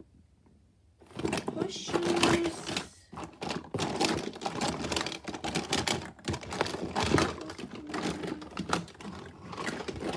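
Close handling noise starting about a second in: rapid clicks, knocks and rustling as things are moved about in and around a fabric bag near the microphone.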